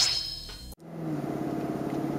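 The fading end of a rising electronic sweep from the soundtrack, then, after a brief gap less than a second in, the Lexus LC500's V8 engine heard from inside the cabin, running at a steady pitch at low speed in fourth gear.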